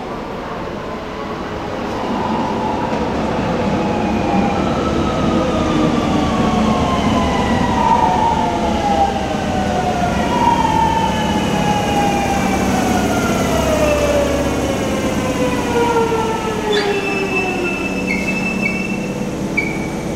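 Kobe Municipal Subway 3000 series train braking into a station, its Hitachi GTO-VVVF inverter whining in several tones that fall steadily in pitch as it slows. Near the end, as it comes to a stop, the falling whine gives way to a high steady tone with short breaks.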